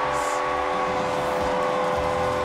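Arena goal horn sounding a steady chord of several held tones after a home goal, over a cheering crowd.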